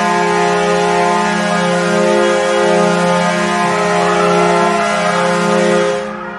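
Kahlenberg Q3-483 air horn used as an ice hockey goal horn, sounding one long, steady blast of several tones held together as a chord. It is loud throughout and drops off right at the end.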